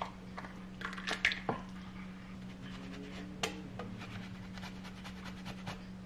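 Scattered soft clinks and knocks of a ladle and bowls as soup is served, over a steady low hum.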